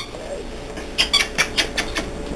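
French bulldog puppies at play, with a quick run of short high-pitched squeaks, about five in a second, in the second half.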